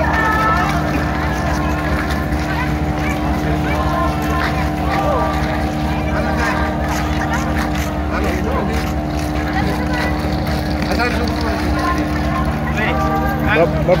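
Steady machinery drone of a large docked passenger ship, with a crowd of people talking over it.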